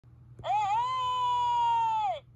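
One long, high-pitched vocal cry that starts about half a second in, wavers briefly, then holds one steady note that sags slightly near the end.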